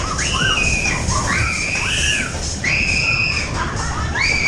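Riders screaming on a fairground ride: three long, high shrieks, each a little under a second, one after another over a steady low rumble.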